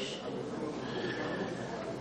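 A pause in speech: faint, steady background noise of a hearing room picked up by an open desk microphone, with a faint thin tone about halfway through.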